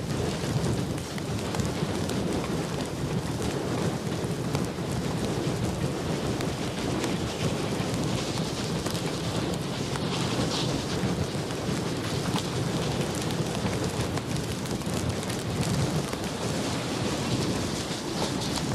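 Reading 2102, a 4-8-4 steam locomotive, working with its train: a steady, dense rumbling roar of exhaust and running noise with no separate beats.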